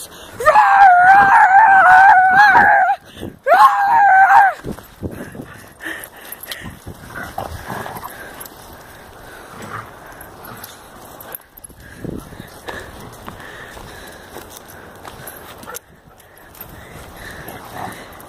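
A loud, high, wavering cry held for about two and a half seconds, then again for about a second. It is followed by quieter, irregular noise from two dogs play-fighting on grass.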